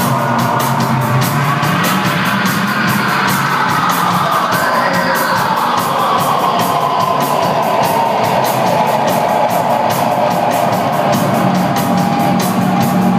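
A live rock band plays a slow, dark instrumental passage: fast, even ticking from the drums, steady low bass notes, and a keyboard tone that swoops up and then slowly glides back down.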